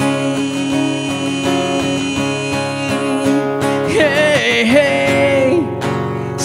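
Steel-string acoustic guitar strumming under a male voice that holds one long sung note, then a short sung phrase about four seconds in.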